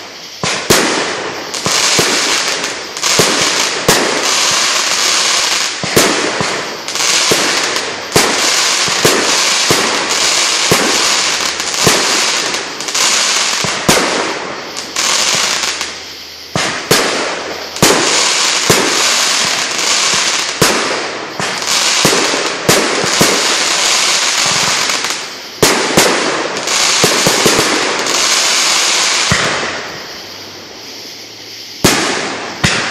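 Fireworks barrage: dense, continuous crackling and hiss with many sharp bangs in quick succession, dropping off briefly twice.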